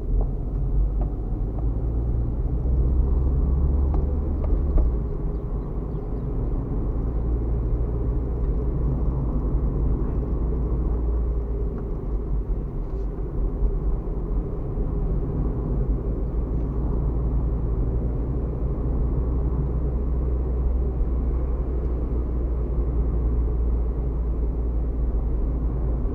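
A car's engine and tyre noise heard from inside the cabin while driving: a steady low rumble that swells and eases slightly with the road.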